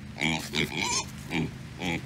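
Pigs grunting: a series of short, rough grunts while they root at the ground with their snouts.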